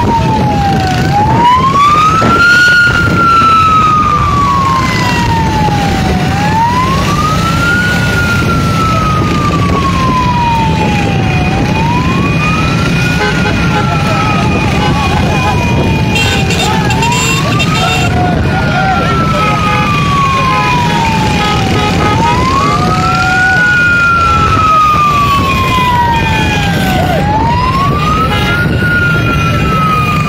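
Vehicle siren of the escort wailing slowly, each wail rising in about a second and a half and falling over about three and a half, repeating every five seconds or so over a steady low rumble.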